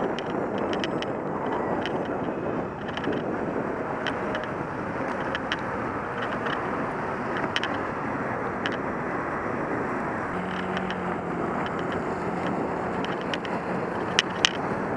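Steady road and wind noise from a camera on a bicycle riding in city traffic on wet pavement, with passing cars and scattered light clicks and rattles. A low steady hum joins about two-thirds of the way through.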